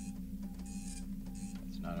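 Film-soundtrack machine ambience: a steady low hum under a rhythmic mechanical whirring that repeats a little faster than once a second. A woman's voice starts just at the end.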